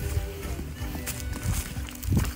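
Footsteps on a dry-leaf-covered dirt trail, a thud about every half second, under background music with sustained tones.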